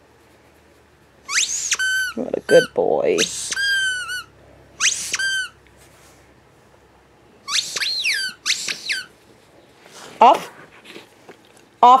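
A squeaky plush toy being squeezed, giving a run of high, shrill squeaks in two bunches, several dropping in pitch as they end. Near the end comes a short lower rising sound.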